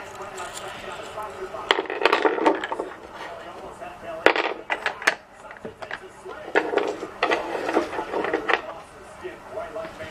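Wooden toy pizza toppings clicking and clacking together in irregular bursts as they are handled, with a child's voice murmuring among them.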